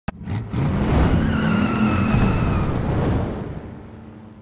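A car engine revving hard with tires squealing, opened by a sharp click; it fades away over the last second.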